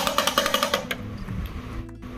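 Small damru (hourglass hand drum) shaken with a twist of the wrist, its knotted cords striking the two heads in a fast rattling roll that stops a little under a second in.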